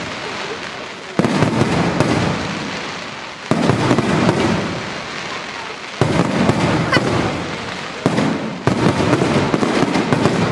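Aerial firework shells bursting overhead, each sudden bang followed by dense crackling that fades over a second or two. Fresh bursts come about a second in, at two seconds, three and a half, six and about eight seconds, with one hard on the heels of another near the end.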